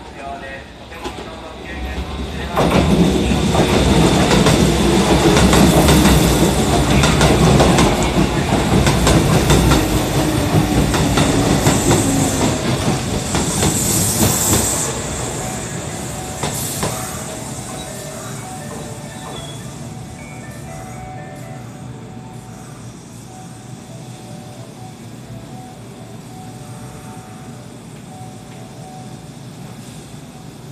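Kintetsu 1233-series and 8000-series electric train running into a station platform. Wheel and motor noise grows loud about two and a half seconds in, with a tone that falls as the train slows and a high squeal near the end of its run. It fades to a steady lower rumble from about fifteen seconds as the train comes to a halt.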